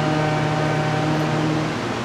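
A steady low hum under an even hiss of background noise, unchanging, with no chanting.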